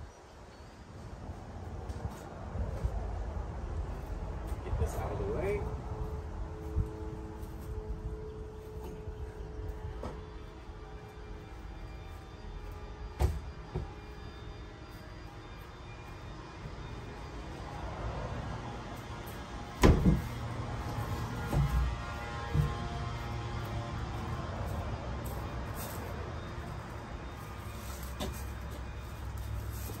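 Steady low rumble of background noise with a few knocks and thuds scattered through it, the loudest about twenty seconds in.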